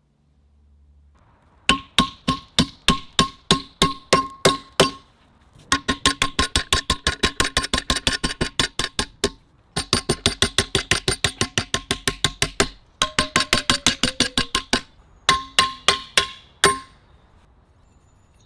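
Hammer blows on a silver bar clamped in a bench vise, each a sharp, ringing metallic strike. The blows come in five quick runs of several per second, with short pauses between runs.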